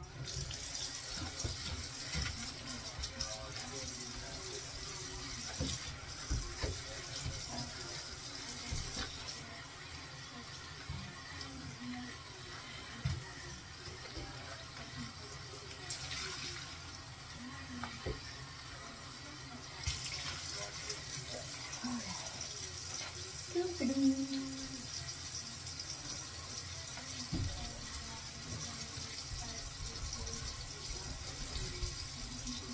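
Water running from a bathroom sink tap into the basin during scrubbing. The flow stops about nine seconds in, runs briefly once, and comes back on about twenty seconds in.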